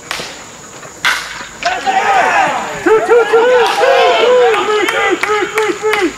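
A baseball bat cracks against a pitched ball about a second in, and many voices then break into excited shouting and cheering that runs on to the end.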